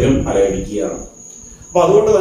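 A man speaking, with a short pause about a second in, over a thin steady high-pitched whine.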